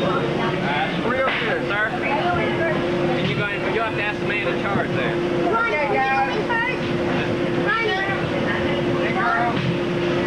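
Many young people's voices talking and calling out over one another, some high and excited, with no one voice standing out. A steady hum runs underneath.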